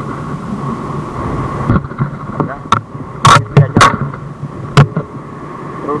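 Strong wind buffeting the microphone as a steady rumble, with several sharp, loud knocks in the middle, the loudest sounds here.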